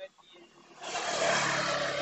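A road vehicle going by close at hand: a rush of tyre and engine noise that swells in a little under a second in and then holds steady.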